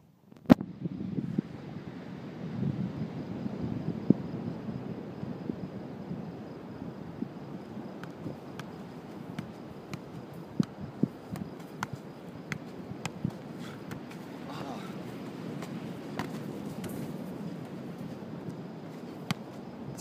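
A football being juggled, a series of irregular soft kicks and taps against a steady low rumble of outdoor noise, with a sharp click about half a second in.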